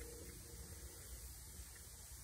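Faint, steady low hum of room tone.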